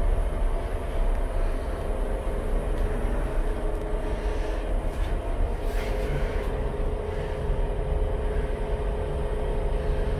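A passenger lift car travelling upward: a steady low rumble with a steady hum, and a short hiss about six seconds in.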